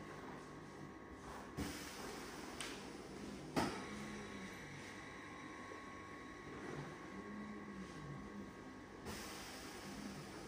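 Faint low whir of a Panasonic EP-MA103 massage chair's motors running, rising and falling in pitch in slow arcs now and then, with two sharp clicks, the louder about three and a half seconds in.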